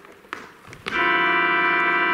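A keyboard playing an organ sound holds one sustained chord, which comes in suddenly about a second in after a quiet start.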